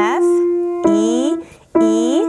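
Grand piano playing three single melody notes about a second apart, each struck and left to ring. The first is an F and the next two are a step lower, on E.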